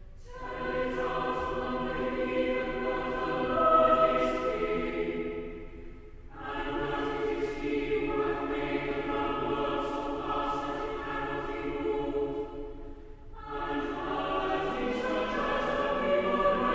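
Mixed choir singing a psalm to Anglican chant, in phrases several seconds long with brief breaks about 6 and 13 seconds in.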